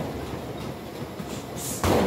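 Motorized treadmill running steadily under a jogger's footfalls, with one loud thump near the end.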